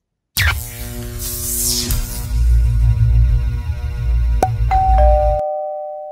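Short channel intro music sting: it starts with a whoosh over heavy bass, has a sharp hit about four and a half seconds in, and ends on a two-note falling chime that rings on after the bass stops.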